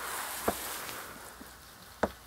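Spray from a garden hose falling on freshly added soil in a raised bed, a steady hiss that slowly fades. A single sharp knock about half a second in.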